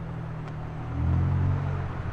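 McLaren 720S's twin-turbo V8 running at low speed as the car drives slowly past, a steady low engine note that grows louder about a second in.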